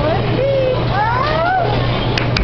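Bowling alley din: the steady low rumble of bowling balls rolling down the lanes, with a voice calling out twice in drawn-out, rising-and-falling tones.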